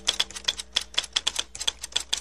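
Rapid keystroke clicks of a typing sound effect, about seven a second, laid over on-screen title text being typed out. A faint tail of a mallet-percussion chord lingers underneath near the start.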